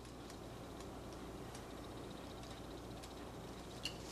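Faint trickle of ferric chloride etchant poured from a plastic bottle into a porcelain bowl, over a low steady hum with scattered light ticks and a small click near the end.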